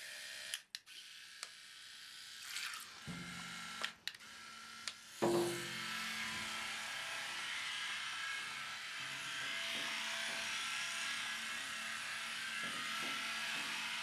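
Small electric motors of a 12 cm radio-controlled mini submarine running in a bathtub of water: a steady motor hum with a hiss over it. It comes in faintly about three seconds in and grows louder about five seconds in, after a few faint clicks.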